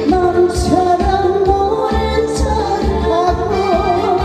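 A woman singing into a handheld microphone over amplified musical accompaniment with a steady bass beat of about two beats a second; her voice comes in right at the start.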